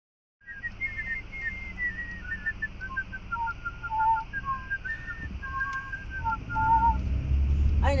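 A person whistling a tune in short clear notes, inside a moving car, with the car's low road rumble underneath that grows louder near the end.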